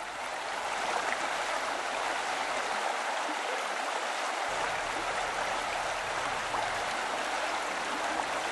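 Steady rushing of running stream water, an even wash of sound without breaks.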